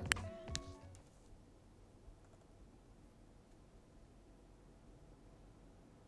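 Enermax ETS T50 CPU cooler fan idling at about 1,000 rpm, so quiet it is barely heard: only a faint steady hiss. Background music fades out in the first second.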